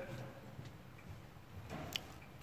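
Quiet room with a few faint clicks, and one sharper click near the end.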